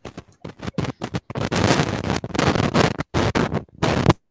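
Loud crackling, scraping noise on an open microphone in a video call: choppy bursts at first, a dense stretch through the middle, then bursts again near the end.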